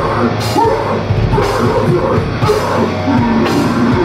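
Heavy metal band playing live through a club PA: distorted guitars, bass and a drum kit, loud and dense, with crashing accents about once a second.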